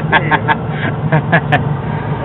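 A man laughing in a quick run of short bursts, over the steady low hum of the gas dryer running.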